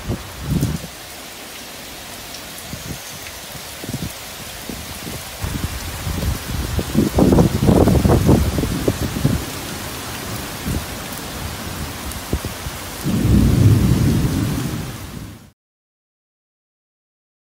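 Heavy rain falling steadily in a thunderstorm, with low rumbles of thunder about halfway through and again near the end.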